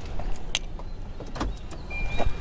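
Two light clicks about a second apart over a steady low rumble, from handling inside a car's cabin. A thin, steady high beep begins just before the end.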